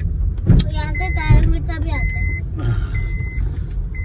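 A single high electronic beep, about half a second long, repeats roughly once a second over the low rumble inside a car's cabin.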